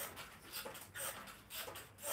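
A person panting hard, in short rhythmic breaths about two or three a second, in time with steps on a mini stepper.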